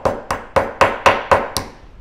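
The rounded peen of a ball-peen hammer tapping a copper rivet head on a metal bench block, peening a texture into it. There are about four light strikes a second, each with a short metallic ring, and they stop about one and a half seconds in.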